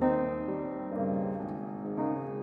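Background piano music: slow held notes, with a new chord struck at the start and another about a second in.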